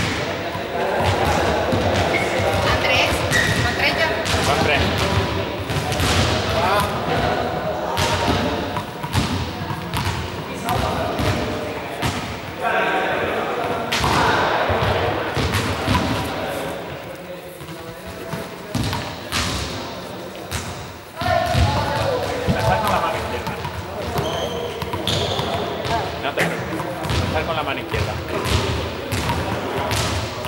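Voices talking in a large, echoing sports hall, with repeated thuds of balls bouncing and dropping on the gym floor.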